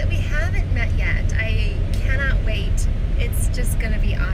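Steady low road and engine rumble inside a moving car's cabin, with someone talking over it for the first couple of seconds.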